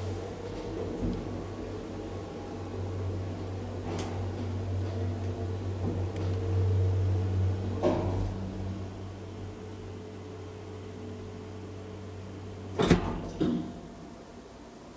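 1991 KONE hydraulic elevator rising: a steady low hum from the hydraulic pump motor, which fades after about eight seconds as the car slows to level at the floor. A loud cluster of clunks comes near the end as the car stops.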